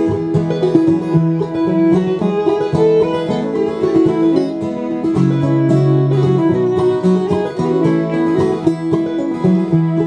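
Live acoustic bluegrass band playing an instrumental break between sung verses: fiddle, five-string banjo rolls and strummed acoustic guitar over upright bass notes.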